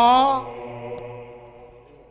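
A man's sung, chant-like line ends with a long held note in the first half-second, then a steady low drone carries on underneath and slowly fades away.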